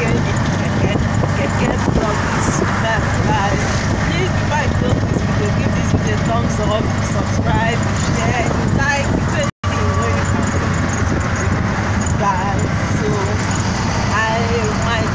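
Auto-rickshaw under way, its small engine and road noise running steadily, with a person's voice over it. The sound cuts out completely for a moment about two-thirds of the way through.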